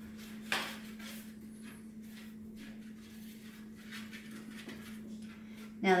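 Fingers rubbing butter over a metal baking sheet to grease it: faint, irregular rubbing strokes, one a little louder about half a second in, over a steady low hum.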